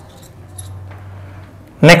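Faint short squeaks and ticks of a marker writing on a glass lightboard over a low steady hum, then a man's voice starts near the end.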